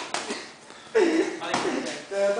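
A sharp slap of a boxing glove landing at the very start, with a smaller knock right after, then a man's short voiced exclamation about a second in.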